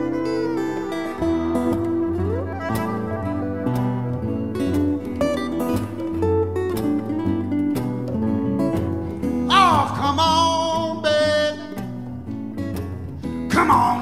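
Live acoustic-rock band playing an instrumental break: acoustic and electric guitars over a steady beat of hand drums, with the fiddle joining in. A bright, sliding high line stands out briefly about ten seconds in, and singing comes back in at the very end.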